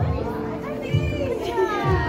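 Upbeat song with a steady beat and singing, with children's voices over it.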